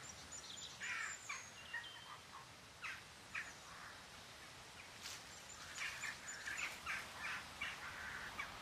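Wild birds chirping and calling in short notes, a few thin high whistles among them. A cluster of calls comes about a second in, and they get busier in the second half, over a faint steady outdoor hiss.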